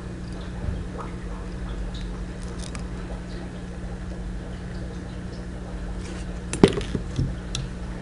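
Faint ticks and rustles of fingers whip-finishing tying thread at the head of a fly held in a vise, with one sharp click about two-thirds of the way through, over a steady low hum.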